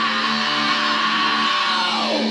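Electric guitar chord held and ringing steadily, with no singing over it.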